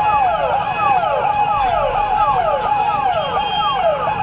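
An electronic siren sounding in quick, repeated falling sweeps, about three a second, each fall overlapping the next.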